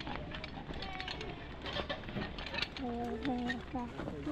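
Footsteps on a dirt trail with scattered light clicks and clinks of climbing gear, and short indistinct voices around three seconds in.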